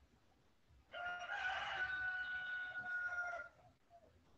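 A rooster crowing once: one long call of about two and a half seconds, starting about a second in, coming through an open microphone on a video call.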